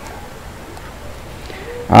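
Low steady room hiss during a pause in speech, ended near the end by a man's drawn-out hesitant "ah".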